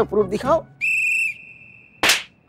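A whistle-like comic sound effect: one steady high tone, loud for about half a second and then held more softly, starting just after a spoken line ends.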